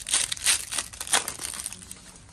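The foil wrapper of a 2021 Donruss baseball card pack being torn open and crinkled by hand: a quick run of crackling rustles that fades out near the end.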